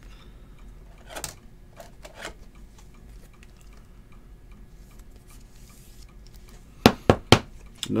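Trading cards being handled and sorted on a table: a few soft clicks of cards, then three sharp taps in quick succession near the end.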